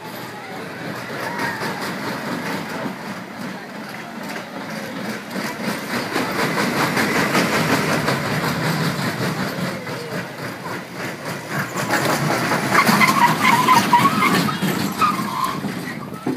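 A small steel family roller coaster train rolling and rattling along its track, the rumble building as the train comes close and loudest with a dense clatter a few seconds before the end.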